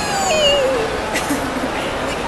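A woman's long drawn-out "whee", her voice sliding down in pitch over about a second, then a brief click.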